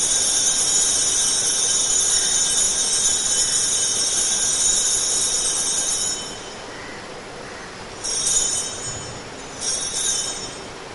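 Altar bells rung at the elevation of the host: a dense, continuous high metallic ringing that stops about six seconds in, followed by two short rings near the end.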